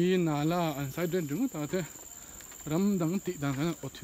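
Steady high-pitched drone of tropical forest insects, heard under a man's voice that comes and goes in two stretches.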